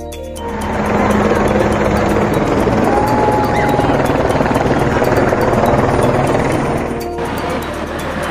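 Helicopter flying overhead: a loud, steady rotor and engine noise that sets in about half a second in and cuts off sharply near the end, with music underneath.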